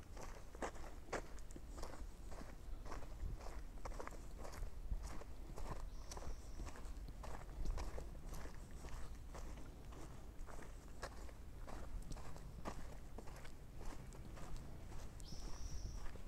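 A hiker's footsteps on a dirt trail at a steady walking pace, about two steps a second. Two brief high-pitched notes sound, about six seconds in and near the end.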